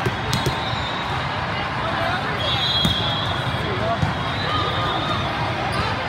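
Echoing volleyball-hall din: scattered thuds of volleyballs being hit and bouncing across many courts, over steady crowd chatter.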